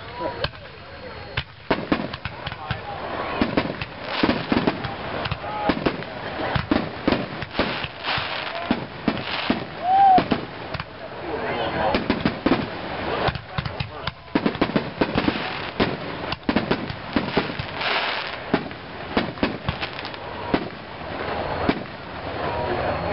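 Excalibur aerial firework shells launching and bursting in quick succession: a dense run of sharp bangs and crackle, loudest about ten seconds in.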